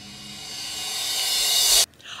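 A hissing noise swell, a suspense riser effect, growing steadily louder and then cutting off suddenly near the end.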